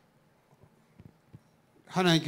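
A pause in a lecture: quiet room tone with a few faint clicks, then a voice starts speaking just before the end.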